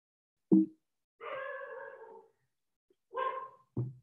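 A dog barking in the background over a video-call line: a short loud bark about half a second in, a longer drawn-out call, and two more short sounds near the end.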